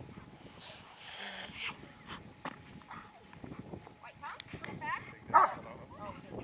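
A dog whining in short rising-and-falling cries, then one louder short bark near the end, among scattered small knocks and rustles.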